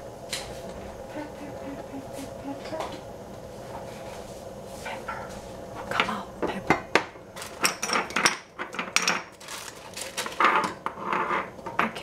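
Kitchen clatter: clinks and knocks of jars, pots and utensils being moved about while rummaging for the pepper, a few at first and many in quick succession in the second half.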